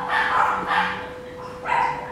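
A dog barking: three short barks, near the start, just under a second in and near the end.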